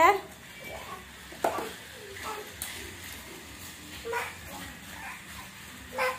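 Quiet room sound with a few brief, faint, distant voices and a single sharp knock about one and a half seconds in.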